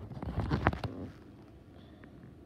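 Handling noise: a quick run of small clicks and knocks in the first second as a LEGO cup is handled right next to the microphone, then quiet.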